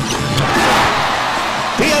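Basketball arena crowd cheering, swelling to a peak about half a second in and easing off.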